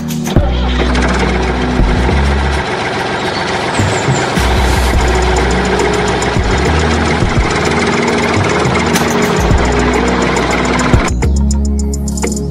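A steady engine-like running noise for a toy tractor, starting just after the start and cutting off about a second before the end, over background music with a steady bass.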